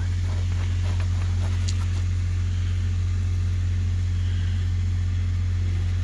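Steady low hum of an idling engine, even and unchanging, with a few faint clicks in the first two seconds.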